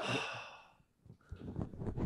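A man's long breathy exhale, like a sigh, trailing off within the first half second, followed by near silence with a few faint small clicks.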